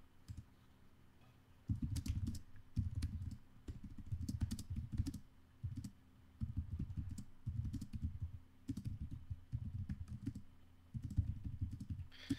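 Typing on a computer keyboard in quick runs of keystrokes with short pauses between them, the strokes mostly dull thuds with faint clicks. The typing starts after a pause of nearly two seconds.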